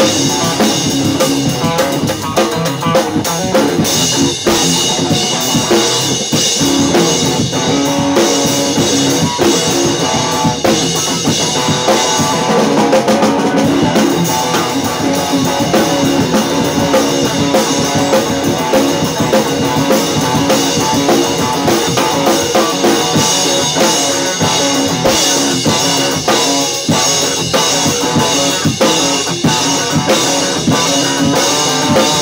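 Electric guitar and drum kit playing together without a break: a Stratocaster-style electric guitar over steady drum and cymbal hits.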